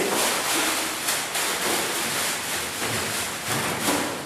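Large black plastic garbage bag rustling and crinkling loudly as it is swung and shaken, then bundled down onto a desk.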